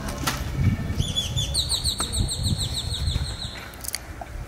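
A rapid trill of high, falling chirps, about eight a second, starting about a second in and ending shortly before the close, rising a step in pitch partway through, over a steady low rumble.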